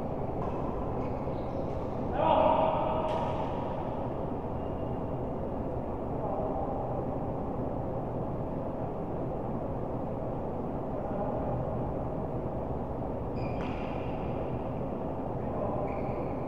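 Badminton doubles in play: a player's loud call about two seconds in, a few short sharp sounds of play on court in the first few seconds and again near the end, and fainter voices, over a steady background noise.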